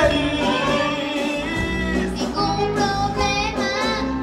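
A song sung over instrumental accompaniment, with long held notes that waver in pitch over a steady bass line.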